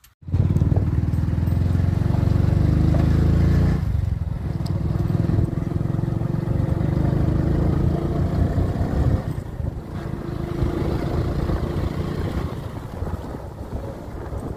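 Motorcycle engine running as it carries riders along a dirt road. The sound comes in abruptly near the start, is loudest for the first four seconds, then runs on a little lower with rushing air.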